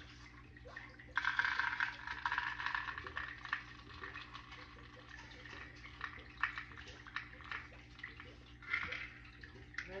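Scented aroma beads poured and shaken out of a silicone mold into a cup. A dense rattling pour starts about a second in and lasts a couple of seconds, followed by scattered clicks of loose beads.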